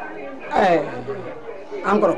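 Speech only: a murmur of several voices, with one voice louder about half a second in, falling in pitch.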